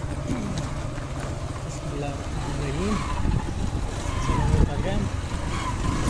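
Motorcycle engine running at low, steady revs as the bike rolls slowly down a steep gravel track, with a rougher low rumble of the ride from about halfway.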